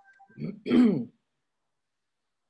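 A person clearing their throat, two short rough bursts about half a second in, the second louder.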